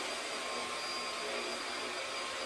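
Upright vacuum cleaner running, a loud, steady whine over rushing air.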